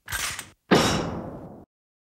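Two sudden impact sounds: a short one, then a louder one about three quarters of a second later that dies away over about a second and cuts off abruptly.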